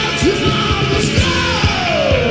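U.S. power/heavy metal song played loud: electric guitars and drums with a yelled vocal line. A long falling glide in pitch begins about a second in.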